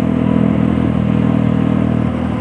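Motorcycle engine running steadily while the bike cruises along a paved road, a constant low hum with road and wind noise.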